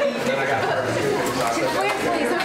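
Chatter of a group of young people all talking over one another at once, with no single voice standing out.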